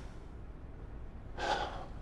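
A person's short audible breath about one and a half seconds in, over a low steady hum.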